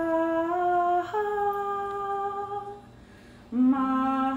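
A single voice humming a slow melody in long held notes, with a short break about three seconds in before it starts again.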